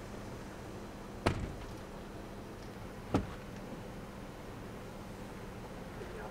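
Two sharp thumps about two seconds apart over a faint, steady low hum.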